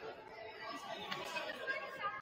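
Faint, indistinct chatter of a few people talking in a large, mostly empty gymnasium.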